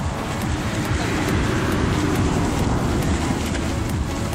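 Water splashing and churning as a cast net full of fish is dragged through the shallows, the trapped fish thrashing in the mesh. Background music with a steady beat plays underneath.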